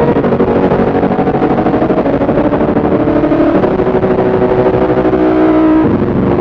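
Casio MT-100 electronic keyboard, recorded on cassette tape, holding loud sustained chords that change about halfway through and again near the end.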